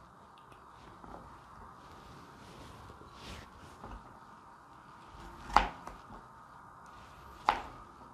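Kitchen knife cutting a red bell pepper on a cutting board: quiet handling of the pepper, then two sharp knocks of the blade against the board, the louder one about five and a half seconds in and another near the end.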